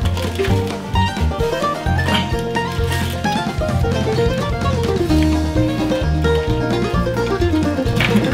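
Upbeat bluegrass-style background music: a quick plucked-string melody, banjo-like, stepping up and down over a steady pulsing bass line.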